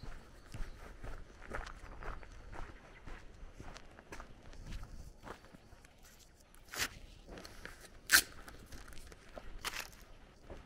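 A person's footsteps walking at an even pace, about two steps a second, with a few sharper clicks in the last few seconds; the loudest is about eight seconds in.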